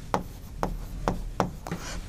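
Pen strokes on a writing board: about five short, scratchy strokes, roughly two a second, as figures are written.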